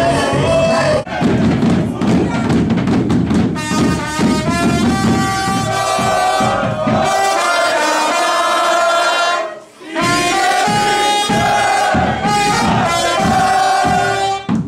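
Live band music led by trumpet over bass drums, with a short break just before ten seconds in.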